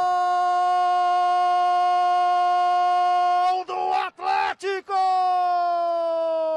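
A football commentator's long drawn-out goal shout, "Gooool!", held on one high pitch for several seconds, then a few quick broken syllables and a second long held note that slowly falls in pitch.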